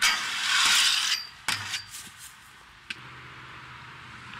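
Aggressive inline skates grinding a metal handrail: a loud scrape lasting about a second with a thin metallic ring, then a sharp clack and a few knocks as the skater lands, and one more click near the end.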